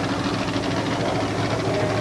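Monster truck engines running in a steady drone with a low hum under it.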